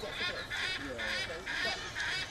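Humboldt penguins calling: a series of short calls, about two a second, with faint voices underneath.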